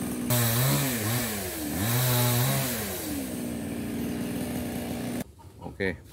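Small two-stroke chainsaw revved twice, its pitch climbing and falling back each time, then left idling steadily. The sound cuts off abruptly near the end.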